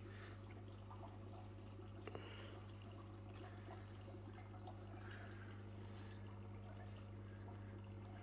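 Quiet background with a steady low hum and faint room noise; one small click about two seconds in.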